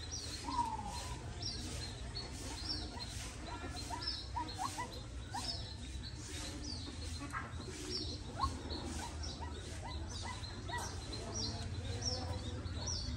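A small bird chirping over and over, short high falling chirps about once every half-second to second, over a steady low hum.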